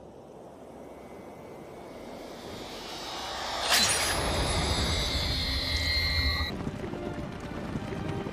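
Film sound effect of a thrown spear: a slow rising swell, then one sharp strike about four seconds in, followed by a high ringing tone that cuts off a few seconds later, over a low rumble and orchestral score.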